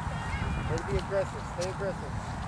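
Faint, distant voices of players calling out a few short words on the field, over a steady low rumble.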